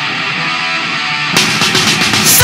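Punk rock band recording: a guitar-led passage with the cymbals dropped out, then about one and a half seconds in the drums and full band crash back in.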